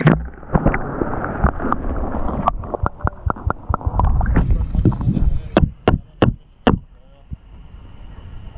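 Water rumbling and sloshing against a camera held underwater, muffled, with knocks and bumps from handling. Four sharp clicks come about six seconds in. The sound then drops away as the camera comes up out of the water.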